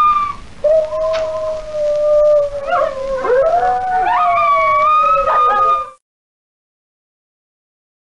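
Howls of wild canines: long, held calls that slide slowly in pitch, at least two voices overlapping, cutting off about six seconds in.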